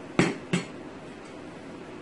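Two sharp clunks about a third of a second apart as an emptied blender jar is set down hard on the counter, the first one louder.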